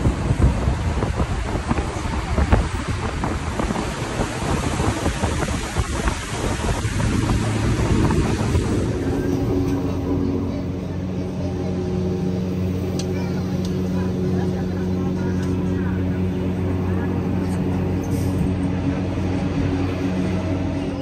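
Interior of a moving passenger train: an even rumble and rush of running noise, changing about nine seconds in to a steadier hum with several steady tones over a quieter hiss.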